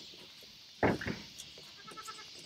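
A goat bleating: one short loud call a little under a second in, followed by a weaker, briefer one.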